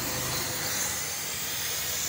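Steady hiss of compressed air rushing through a venturi-type vacuum coolant refill tool, pulling a vacuum on a car's cooling system before the new coolant is drawn in.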